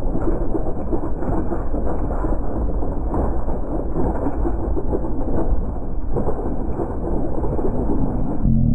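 Wind buffeting an action-camera microphone on a mountain bike descending a rocky dirt trail, with steady low rumble and constant small rattles and knocks from the bike and tyres over rocks and gravel.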